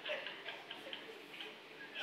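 Faint laughter dying away in short, breathy puffs, a few a second and irregular, growing softer.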